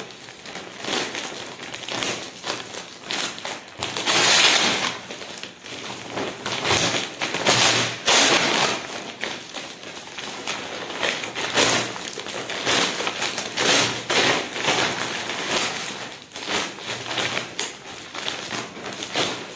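Plastic bags and a woven plaid carrier bag rustling and crinkling as they are handled and opened, in irregular bursts, loudest about four seconds in.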